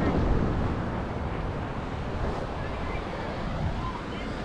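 Wind buffeting the microphone over the steady rush of beach surf.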